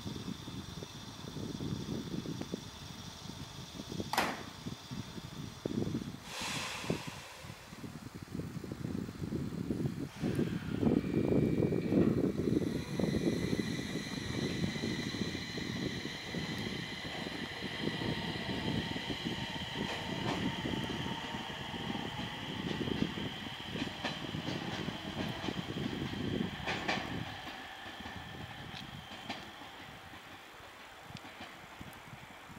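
JR East 701 series electric train at a platform: a clack about four seconds in and a short hiss a couple of seconds later as the doors close. Then the train pulls away, its wheels rumbling and its electric motors whining, and the sound fades as it leaves.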